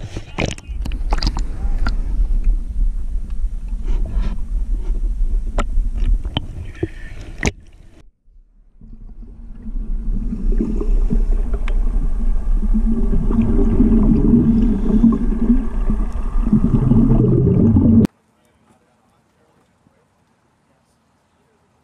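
Water sloshing and splashing against a waterproof action camera at the surface, with sharp clicks of droplets and ripples hitting the housing. After a short quiet dip the camera goes under, and the sound becomes a dense, muffled underwater rumble with bubbling from the diver's scuba exhaust. It cuts off abruptly near the end.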